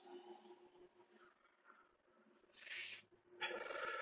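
A man breathing hard through glute bridges with a cloth slide, with two loud, hissing exhales in the second half, over a faint steady hum.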